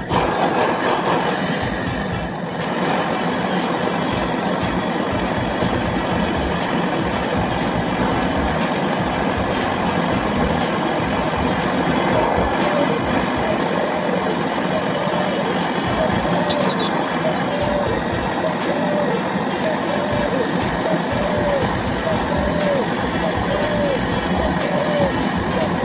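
Hand-held butane gas torch burning steadily with an even hiss as its flame heats a copper refrigerant pipe joint on a split air conditioner's outdoor unit. The sound starts abruptly at the beginning.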